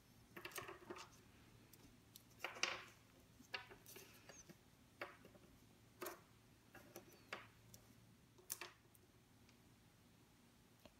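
Unwrapped hard candies being set down one by one on baking paper: faint, scattered light clicks with brief paper rustles, about one a second, stopping a little before the end.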